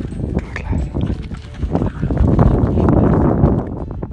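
A dog moving about close to the microphone on grass, with scuffing and handling noise that gets louder about halfway through.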